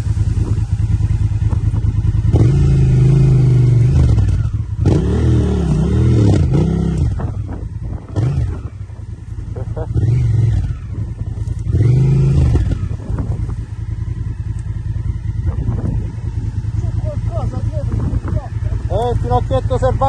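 Adventure motorcycle engine running at idle, with several short rev blips that rise and fall in pitch as the rider works the bike through thick brush. The bike is stuck on a trail too narrow to turn around on.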